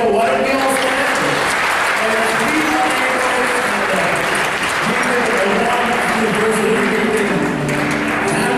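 Congregation applauding steadily, with voices mixed in.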